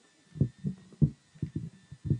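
Microphone handling noise: about six dull, low thumps at irregular spacing as a microphone on a desk stand is gripped and adjusted.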